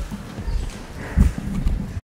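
Irregular low thumps and bumps close to the microphone, from people moving about and the camera being handled, with the loudest thump a little over a second in.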